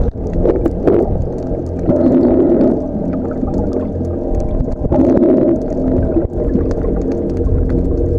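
Muffled underwater sound picked up by a snorkeler's camera: a steady low rumble of moving water, sprinkled with sharp clicks and crackles, swelling louder twice, about two and five seconds in.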